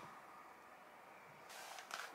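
Near silence: room tone, with a faint rustle in the last half second.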